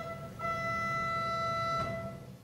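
Organ playing the closing notes of a Baroque trill: a quick change of notes at the start, one note held steady for over a second, then a brief final note before it dies away.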